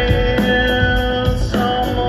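Live rock band playing: electric guitar and bass with drums, a few notes held steadily through the middle.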